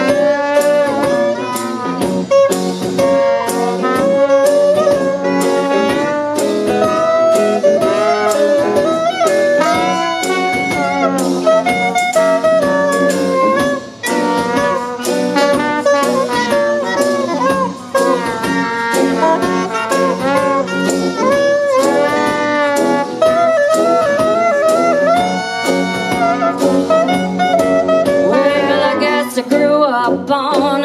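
Live small jazz band playing an instrumental intro: clarinet, saxophone and trombone lines over guitar, tuba and drums keeping a steady beat.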